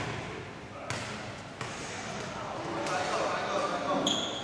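A basketball bouncing on an indoor court floor: two sharp bounces about a second in and about half a second later, then fainter knocks.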